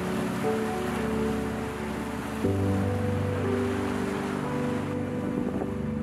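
Sea waves breaking and washing over a rocky shore, under soft background music of held chords. The surf's hiss thins out near the end.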